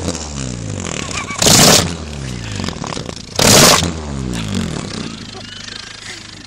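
Honda Civic Type R's K20A2 four-cylinder engine revved twice, about two seconds apart, its exhaust blowing through a rubber inner tube over the tailpipe so that each rev comes out as a loud flapping, farting blast. After each blast the engine note falls back toward idle.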